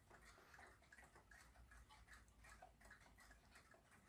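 Near silence: room tone with faint, regular ticking.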